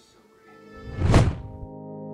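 Edit transition sound effect: a swelling whoosh that peaks in a deep thud just over a second in. It leads into sustained synthesizer chords of background music that start right after.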